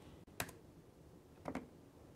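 Two short taps on a laptop keyboard about a second apart, the second a quick cluster of keystrokes, over quiet room tone.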